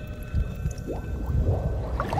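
Sound effects of an animated countdown intro: a steady low rumble with a few short upward swooshes about halfway through.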